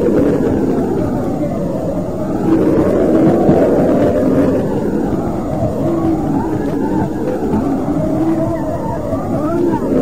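A group of voices singing together, dull and muffled, with notes held about a second at a time.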